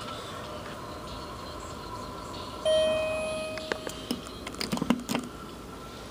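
Elevator hall chime: a single ding about two and a half seconds in, fading away over about a second. A few light clicks and knocks follow.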